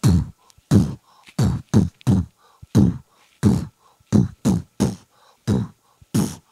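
A man beatboxing close into a handheld microphone: a steady beat of deep kick-drum sounds that each slide down in pitch, with softer hummed and clicked sounds between them.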